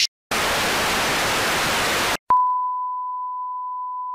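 Television static hiss for about two seconds that cuts off suddenly, then a click and a steady single-pitched test tone of the kind played over colour bars.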